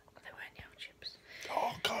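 Quiet whispered speech and breathy mouth sounds, then a spoken word near the end.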